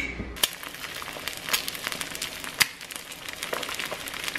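Eggs frying in coconut oil in a frying pan: a steady sizzle full of small crackling pops, starting about half a second in.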